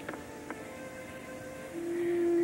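Opera orchestra playing soft sustained chords in a hissy historical live recording, with a couple of faint clicks; near the end a loud held note swells in.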